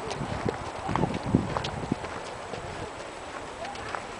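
Footsteps on a dirt trail, an irregular series of short knocks as someone walks.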